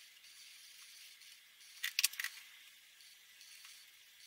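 A felt-tip marker rubbing on paper in short strokes, a faint scratchy hiss that comes and goes. About halfway through comes a quick cluster of sharp plastic clicks.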